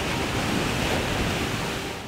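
Ocean waves breaking and surging over the concrete wall and blocks of a seaside rock pool: a steady, loud rush of surf and spray.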